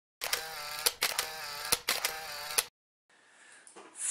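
Intro sound effect on an animated title card: three short steady buzzing tones, each ending in a sharp click, over about two and a half seconds. A brief silence and faint room noise follow.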